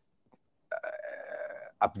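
A man's drawn-out, rough-voiced 'uhh' of hesitation, starting a little under a second in and lasting about a second.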